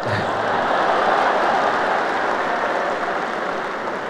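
Large audience applauding in a big hall, swelling in the first second and slowly dying away.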